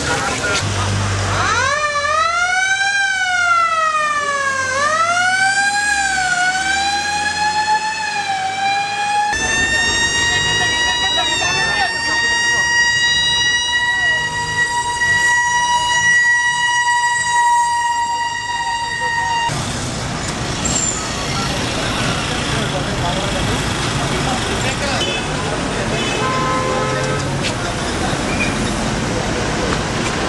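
Ambulance siren wailing up and down in sweeps, then holding a steady high note for about ten seconds before stopping suddenly. Crowd noise and voices are heard before and after it.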